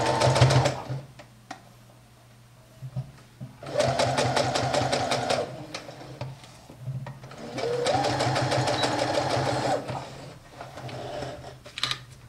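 Domestic electric sewing machine stitching in three short runs, stopping and starting. The motor whirs up at the start of each run and the needle ticks rapidly. Between runs there are pauses with faint handling of the fabric.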